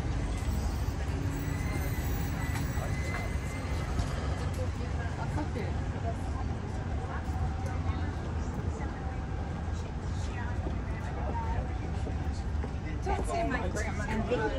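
Busy street ambience: a steady low rumble of passing traffic with indistinct voices of people nearby, a voice becoming clearer near the end.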